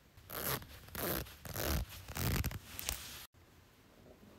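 Zipper on a fleece jacket being pulled, with clothing rustling, in about five quick strokes that stop abruptly a little over three seconds in.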